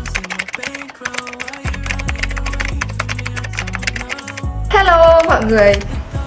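Rapid computer keyboard typing clicks, a typing sound effect, over background music with a steady bass line. The typing stops a little past the middle, and a loud voice comes in near the end.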